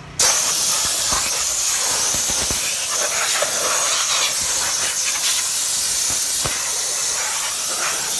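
Compressed-air blow gun on an air hose, blasting a loud, steady hiss of air that starts just after the beginning, blowing dust and crumbs out of a car's interior door panels and crevices.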